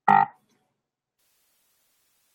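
A short voiced sound from the presenter, about a third of a second long, right at the start.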